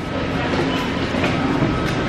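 Steady rumbling background noise inside a supermarket, with faint voices under it.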